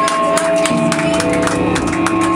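Live garage punk band playing loud: electric guitars hold notes over a run of quick, regular drum hits.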